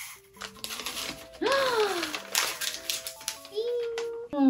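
Crisp kraft paper rustling and crackling as a rolled-up letter is handled and unrolled, over light background music. A short voice-like sound with falling pitch rises out of it about a second and a half in.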